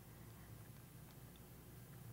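Near silence: a pause in speech, with only faint room tone and low hum.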